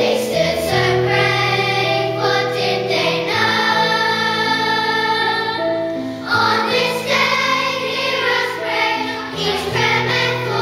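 Children's choir singing, holding long notes that change pitch every second or so, with low sustained tones underneath.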